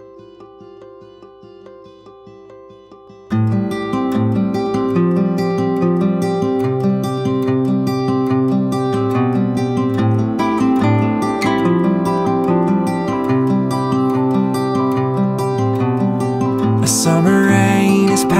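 Song with acoustic guitar: a soft plucked opening, then about three seconds in the full strummed accompaniment comes in much louder and carries on steadily. A voice starts singing near the end.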